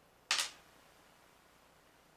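A single brief scrape or rustle about a third of a second in, from hands handling rifle-cleaning gear on a towel-covered table; otherwise faint room tone.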